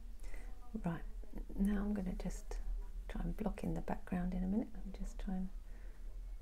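A woman speaking, in phrases the recogniser did not catch, over a steady low hum.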